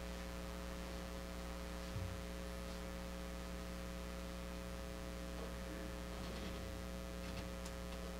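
Steady electrical mains hum: a low, unchanging buzz with a stack of even overtones, heard under the hush of a quiet room. A few faint clicks come near the end.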